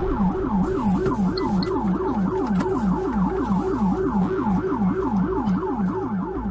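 Police car siren in fast yelp mode: a rapid rising-and-falling wail repeating about three to four times a second.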